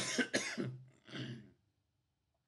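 A man clearing his throat and coughing: three short bursts, the last about a second in.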